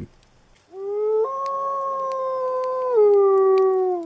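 A wolf howling: one long call that starts under a second in, steps up in pitch, holds steady, then steps down and slides away at the end.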